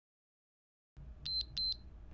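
Two short, high electronic beeps of a workout interval timer, about a third of a second apart, about a second in. They mark the end of a 60-second exercise interval.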